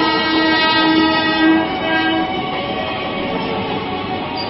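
Train horn sounding one long steady blast that stops about two seconds in, followed by the steady rumble of the train running.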